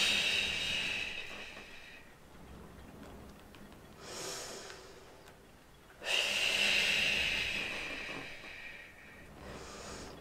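A woman's breathing during a Pilates reverse knee stretch: two long, loud exhales, one at the start and one about six seconds in, each fading away over about two seconds, with a fainter inhale about four seconds in. The exhales go with the abdominal scoop of the exercise, the inhale with the return to neutral.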